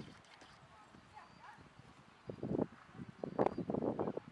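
Horse sounds: quiet at first, then a run of short, loud, irregular bursts from a little past halfway.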